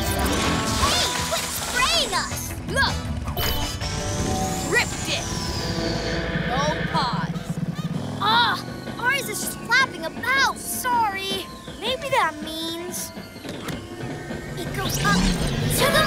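Animated cartoon action soundtrack: background music overlaid with sound effects, including sliding whoosh-like tones, brief crashes and short vocal noises from the characters.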